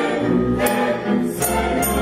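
Mixed choir singing with a string orchestra, sustained chords. A few short, sharp strokes cut through the music.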